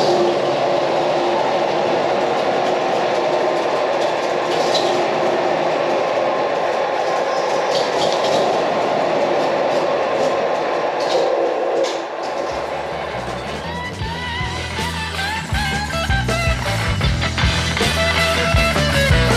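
Panhard AML armoured car's air-cooled flat-four petrol engine running steadily as the vehicle is driven slowly. About twelve seconds in, rock music with bass and electric guitar comes in and takes over.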